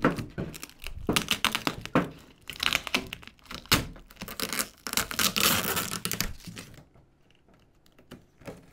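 A box cutter slitting packing tape and clear plastic wrap along the seam of a cardboard shipping box, with crackling, crinkling and tearing of the tape and film, and a longer tear about five seconds in.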